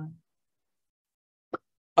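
A man's voice trails off at the very start, then dead digital silence at a cut between two recordings, broken once by a single short click about a second and a half in.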